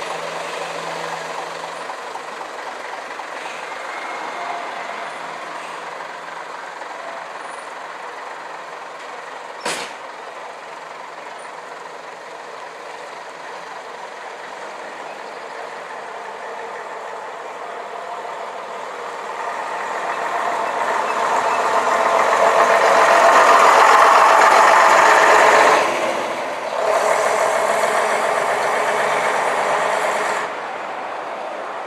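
Diesel engines of vintage buses pulling away: a single-deck Metro-Scania moving off, then a Leyland double-decker running past, loudest about three-quarters of the way through. One sharp knock comes about a third of the way in.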